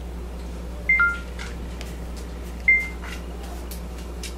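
Two short electronic beeps. The first, about a second in, is a high note dropping to a lower one; the second, under two seconds later, is a single high note.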